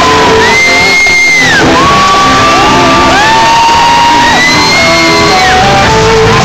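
Rock band playing live in a large hall, with electric guitar under long held high notes that slide up into pitch and drop away at the end of each note.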